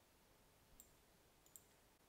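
Near silence with two faint computer-mouse clicks, about a second apart, the second near the end.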